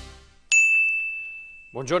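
A theme tune fades out, then a single bright electronic ding sounds about half a second in. It rings on one high note and fades away over about a second.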